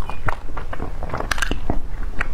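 A person biting and chewing soft bread close to a clip-on microphone: irregular wet mouth clicks and small crackles, busiest about one and a half seconds in.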